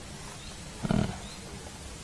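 Pause in a man's speech: faint steady background noise, with one brief low vocal sound about a second in.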